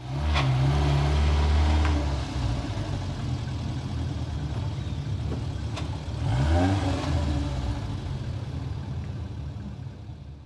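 Engine of a vintage van running as it drives along, with a few sharp clicks. It revs up again about six and a half seconds in, then slowly fades.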